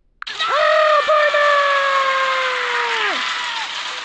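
Avalanche sound effect: a sudden loud rush of noise with a long scream held over it. The scream slides slowly down in pitch and drops off near the end.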